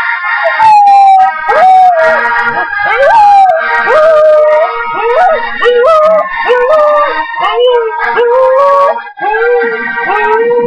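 Husky howling along to music: a string of howls that slide up and then sag down in pitch, each lasting about half a second to a second and following close on the last.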